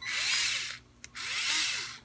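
WORX WX240 4V cordless screwdriver's motor and gearbox running unloaded in two short bursts of under a second each. In each burst the whine rises and then falls in pitch as the button is pressed and released, and a click from the button comes just before each one.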